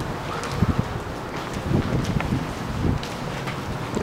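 Wind rumbling on the microphone of a hand-held camera, with irregular low knocks and rustles from the camera being carried by someone walking.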